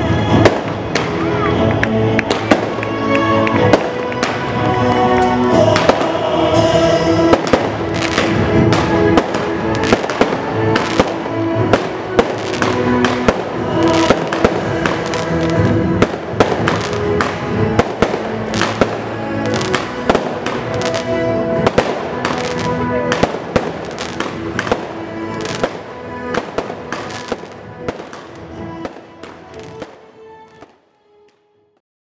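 Fireworks and firecrackers crackling and banging in rapid, irregular bursts over music, fading out over the last few seconds.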